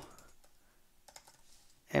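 Computer keyboard typing: a quiet run of a few scattered keystrokes.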